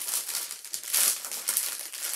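Clear thin plastic bag crinkling as a kit is slid back into it by hand, loudest about a second in.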